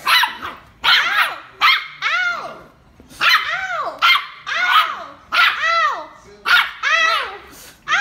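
A small dog barking over and over, in short, high-pitched barks that each rise and fall in pitch, often coming in quick pairs.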